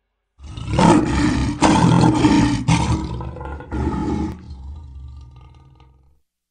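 Lion roar sound effect, loud in several surges for about four seconds, then dying away.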